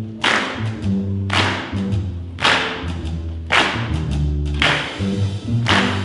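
A high school jazz big band playing a slow, church-style groove: low bass and piano notes under a sharp accent about once a second, with horns coming in near the end.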